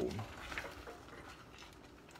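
A wooden spoon in a stainless saucepan of thick tomato sauce with orzo, a faint knock or two as it is left in the pot, then a low background hush.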